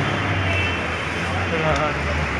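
Steady low rumble and noise of a metro train in motion, with faint voices in the background.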